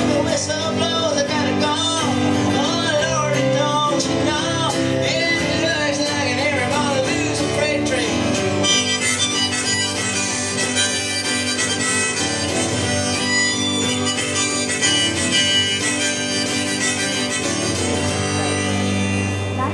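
Harmonica playing an instrumental break over a strummed acoustic guitar in a live blues song, the harmonica notes bending and wavering.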